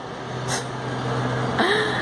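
Low, steady rumble of a passing motor vehicle, with a constant low hum beneath it.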